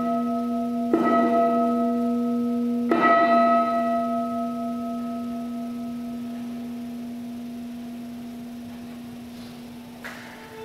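A struck bell rung at the elevation of the chalice in the Mass: two strokes about a second and three seconds in, following one just before. The ringing is clear and long, with a low hum beneath higher ringing tones, fading slowly over the following seconds.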